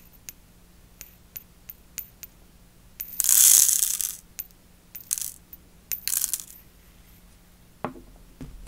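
Tiny pixie micro-crystals shaken out of a small plastic vial, pattering and rattling onto a plastic nail-art tray in three pours, the first and loudest about three seconds in. Scattered small clicks of single crystals and handling come between the pours.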